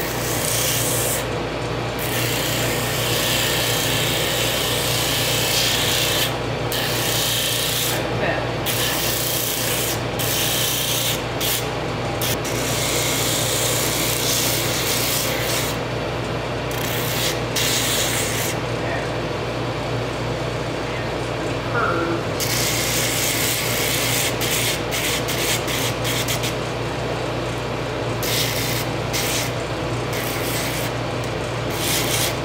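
Pneumatic drum sander running with a steady motor hum while a small wood piece is pressed against its abrasive sleeve. The rasping sanding hiss comes and goes in spells as the piece is pressed on and lifted off.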